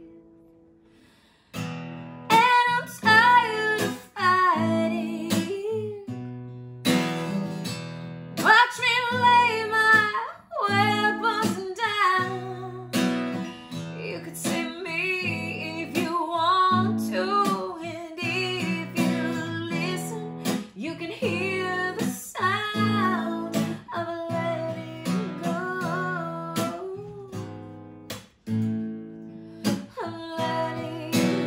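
A woman singing a slow song to a strummed acoustic guitar. The sound dips almost to nothing for the first second or so, then voice and guitar come back in.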